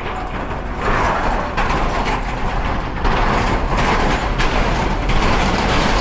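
Vehicle crossing a steel truss bridge: a loud rumble and rattle from the tyres on the bridge deck, coming in irregular surges about once a second.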